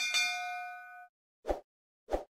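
Notification-bell sound effect: a bright ding struck twice in quick succession, ringing for about a second. About a second and a half in comes a short, dull pop.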